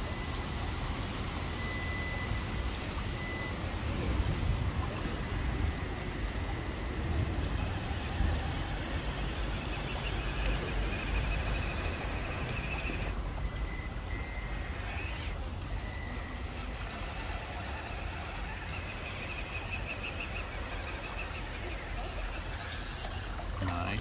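Traxxas TRX4M 1/18-scale RC crawler driving slowly through shallow wet mud: a steady wet, trickling wash from the tyres churning the mud and water, with a faint high whine that comes and goes.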